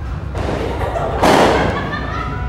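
Two dull thumps, the second and louder one just past the middle, over a steady low background din.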